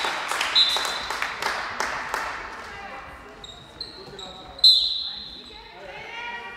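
Handball play on a sports hall floor: the ball bouncing and shoes squeaking on the court, with players calling out. Sharp impacts cluster in the first two seconds, and the loudest sound, a short high squeal, comes about four and a half seconds in.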